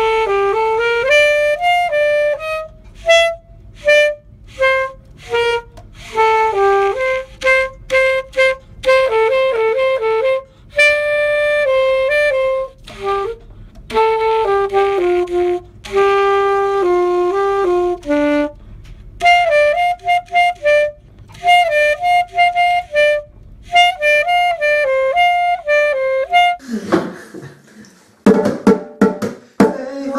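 Alto saxophone playing a slow solo melody, a mix of short detached notes and longer held ones; the playing stops a few seconds before the end.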